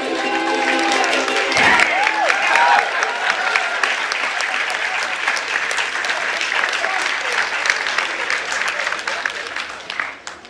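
Audience applauding after a ukulele ensemble's song, the last strummed ukulele chord dying away at the very start. There are a few voices calling out in the first seconds, and the clapping fades near the end.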